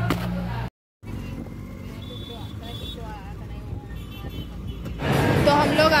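Low steady rumble of road noise inside a moving car with faint voices, coming in after a short silent gap. A woman's loud talking starts near the end.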